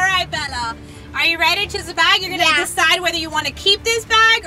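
Girls' voices talking excitedly, over a faint steady low hum.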